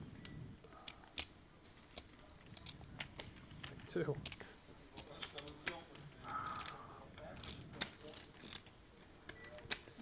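Poker chips clicking against each other, faint and irregular, as a player fiddles with a stack of chips. A faint voice is heard briefly about four seconds in and again a couple of seconds later.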